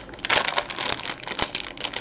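Thin plastic candy bag crinkling and crackling as it is handled, a steady run of small irregular crackles and clicks.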